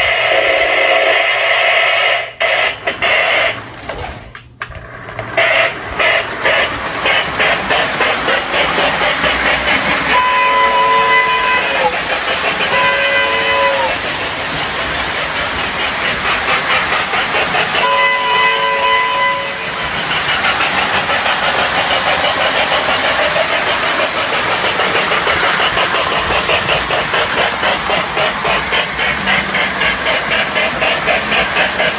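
Lionel MPC-era Chicago and Alton Hudson model steam locomotive running, its electronic "sound of steam" unit chuffing in a steady rhythm. Its electric horn blows three times: twice close together about a third of the way in, and once again past the middle.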